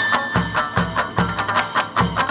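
Instrumental chầu văn ritual music: plucked moon lute (đàn nguyệt) notes running over a steady drum beat of about two and a half beats a second, with no singing.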